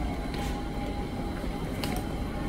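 Steady low rumbling background noise of a takeaway shop, with a faint high hum held throughout and a couple of soft clicks.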